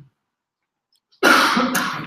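A man coughs once, loudly, about a second in after a short silence.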